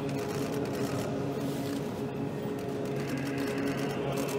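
An Orthodox church choir chanting held notes in several voices, the chord shifting about three seconds in, with scattered faint clicks and rustles over it.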